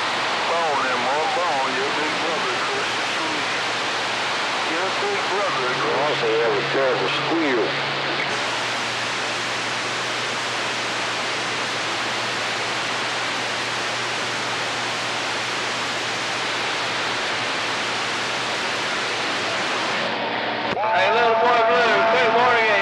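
CB radio receiving long-distance skip signals. A steady hiss of band static runs throughout, with faint, fading distant voices under it in the first several seconds. Near the end a stronger transmission breaks in, with a steady whistle over the voice.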